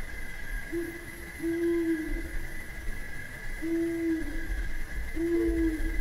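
Four short, low hooting notes, each about half a second long at a steady pitch, with a fifth, slightly higher note beginning near the end, over a steady high-pitched hum and a low rumble.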